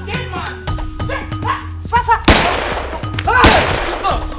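Two loud gunshots just over a second apart, a handgun fired into the air, over raised voices and background music.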